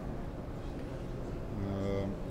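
Steady background noise of a large hall. Over the last half-second a man holds a hesitation sound on one low, unchanging pitch while searching for a figure mid-sentence.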